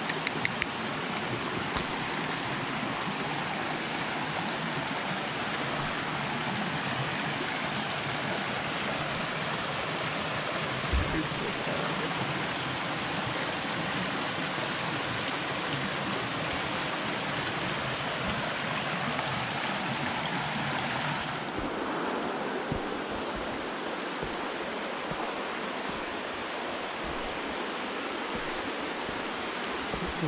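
Steady rush of a shallow mountain creek running over rocks and small cascades. There is one brief thump near the middle. About two-thirds of the way in the water sound loses some of its hiss.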